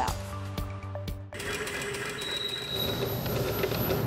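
A short music sting with held notes cuts off about a second in. An industrial sewing machine then runs fast and steadily, its needle stitching through fabric.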